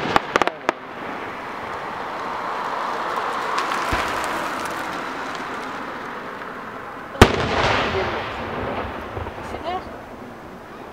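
Aerial fireworks shells bursting: a few sharp crackling pops in the first second, then a single loud bang about seven seconds in, followed by a second or two of crackle and rumbling echo.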